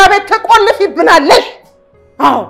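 A woman's voice shouting loudly in rapid, high-pitched bursts, breaking off about a second and a half in.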